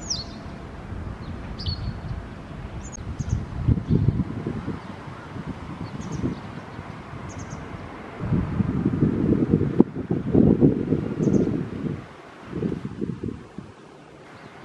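Gusts of wind buffeting the microphone, loudest over a few seconds in the second half. Near the start there are a few short, sharp, downward-sweeping calls of a white wagtail, with fainter high chirps scattered later.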